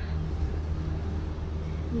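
A steady low rumble of outdoor background noise, without speech.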